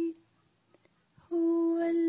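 A voice singing a slow song in long, steady held notes; it breaks off just after the start and comes back in about a second and a half later.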